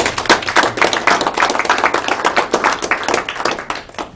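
A small audience clapping: a few seconds of dense, irregular hand claps that stop just before the end.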